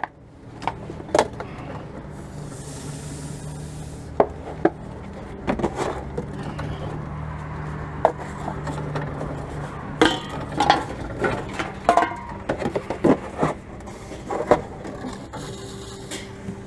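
Aluminium cans and plastic bottles being handled and pushed by hand into a reverse vending machine's round intake: scattered sharp clinks, knocks and scrapes of the containers. Under them, a steady low machine hum from about two seconds in until about ten seconds in.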